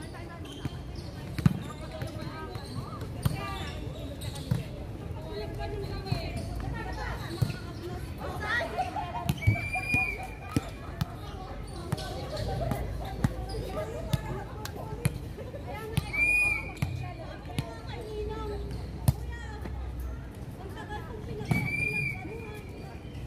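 Volleyball being played on a hard outdoor court: a string of sharp slaps of hands striking the ball and the ball hitting the ground, spread through the rally, with players' voices calling and a few short high tones.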